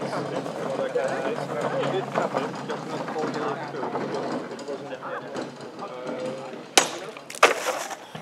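Indistinct voices and chatter, then near the end a sword cuts through a plastic bottle on a wooden post stand with a sharp crack, followed about half a second later by a second sharp knock.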